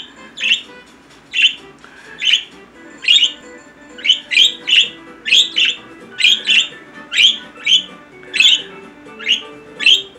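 Pet budgerigar giving short, sharp chirping calls over and over, nearly two a second, some in quick pairs.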